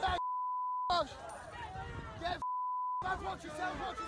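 Two censor bleeps, each a steady pure tone lasting well under a second, one near the start and one about two and a half seconds in, blanking out the audio of a crowd of men shouting in the street. The bleeps mask swearing in the footage.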